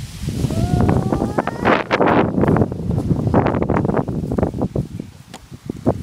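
Dry grass crunching and rustling under footsteps and a toddler's plastic ride-on toy, a dense run of irregular crackles.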